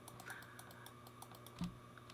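Faint, quick clicking from a computer desk, with a soft thump near the end.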